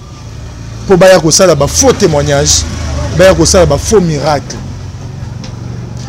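A man talking, over a low steady rumble of passing road traffic.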